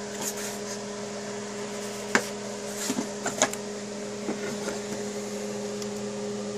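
Yellow plastic tool case being unlatched and opened: a few sharp plastic clicks and knocks, the loudest about two seconds in, over a steady low hum.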